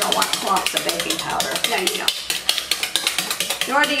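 Wire whisk beating wet pancake batter of pureed squash, eggs and oil in a mixing bowl: quick, steady clicking as the wires strike the bowl.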